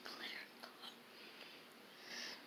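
A faint whisper near the start, with a couple of light clicks after it, against near-silent room tone.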